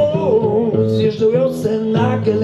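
A man singing a folk-blues song to his own fingerpicked acoustic guitar, the voice carrying a wavering melody over steady plucked notes.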